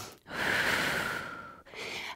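A woman's long audible breath, a soft airy rush starting about a quarter second in and fading out after just over a second.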